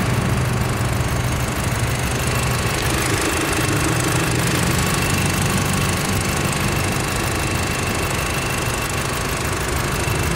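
Volkswagen turbocharged FSI four-cylinder engine idling steadily, heard close up with the bonnet open, with a faint steady high whine over it.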